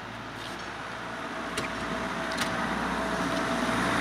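A car's road noise growing steadily louder as it approaches.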